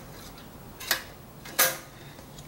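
Rice cooker's cook switch lever pressed by hand, giving a faint click about a second in and a louder click near the end. The switch is being tested after its contact plate under the thermostat was bent down so that it catches with a little pressure.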